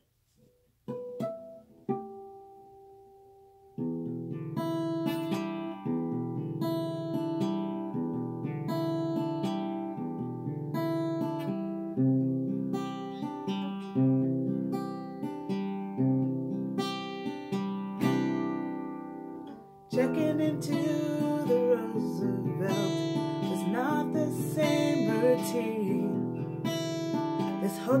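Acoustic guitar playing a song's introduction. A few single plucked notes come first. About four seconds in, picked chords begin in a steady pattern, changing about every two seconds, and the playing grows fuller and louder about twenty seconds in.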